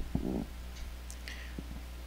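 A pause in a man's speech over a microphone, filled by a steady low electrical hum. There is a brief murmured vocal sound just after the start, and a few faint soft noises in the middle.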